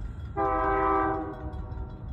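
Diesel locomotive's air horn sounding one blast, a chord of several tones held for about a second and a half, over a low rumble.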